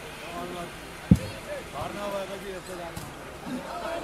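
A volleyball gives one sharp, loud thump about a second in, over crowd chatter.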